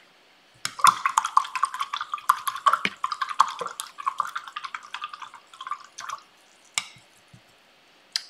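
A paintbrush swished and tapped in a water cup, being rinsed: a quick, irregular run of small clinks and splashes starting just under a second in and stopping around six seconds, then one more click about a second later.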